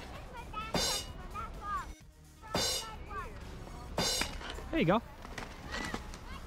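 Voices making short sounds without clear words over background music, with three brief bright sounds about a second and a half apart, then 'there you go' spoken near the end.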